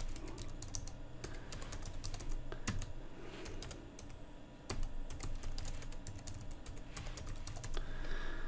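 Typing on a computer keyboard: runs of quick keystrokes, with a short pause about four seconds in before the second run.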